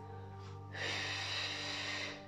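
Soft background music with a steady low tone; about a second in, a person's long audible breath joins it for about a second.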